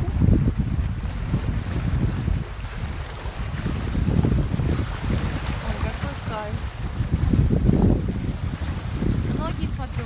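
Wind buffeting the phone's microphone in gusts: a heavy low rumble that swells and eases, strongest near the start, around 4 s and around 8 s.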